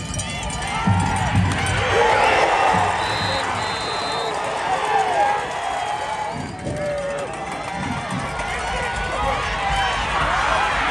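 Football crowd in the stands, many voices shouting and cheering over one another. A referee's whistle blows in two short shrill blasts about three seconds in.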